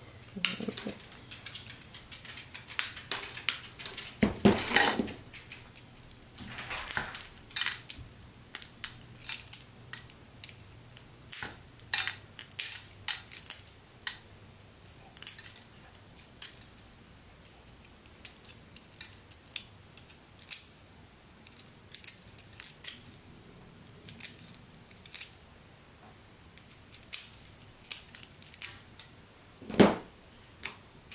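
Small pieces of sheet glass being cut and nipped to shape with hand tools: irregular sharp snaps and clicks, at times several a second, with a quieter pause in the middle.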